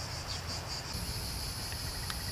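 Insects chirping in a steady, high-pitched drone, with a second, even higher tone joining about halfway through, over a low rumble.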